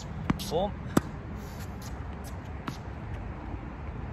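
A served tennis ball's sharp knocks as it lands and bounces on the hard court: three short impacts, the loudest about a second in and a faint one near the three-second mark.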